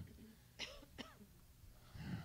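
Near silence: room tone through the sanctuary sound system, broken by two faint short sounds about half a second and a second in.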